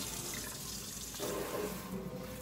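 Kitchen faucet running, a thin stream of water falling steadily into a stainless-steel sink.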